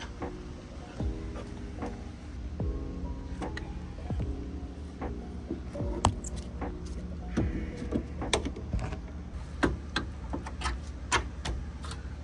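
Background music, with irregular light metallic clinks as suspension parts and tools are handled while a coilover is fitted to the rear suspension.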